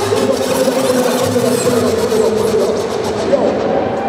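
Live electronic dance music from a DJ set over a festival sound system, in a breakdown: a held, slightly wavering synth tone over a dense wash of sound, with the highest frequencies cut away about three seconds in.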